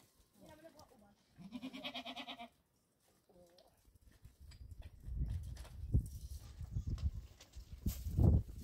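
Goats bleating: one long, wavering bleat about a second and a half in, with shorter, fainter calls before and after it. Over the second half, low thumps and scuffing take over as the loudest sound.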